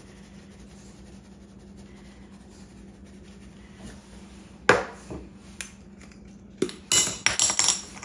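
Kitchen containers being handled on a countertop: a sharp knock about halfway through, a few lighter taps, then a quick run of clinks and rattles with brief ringing near the end, over a faint steady hum.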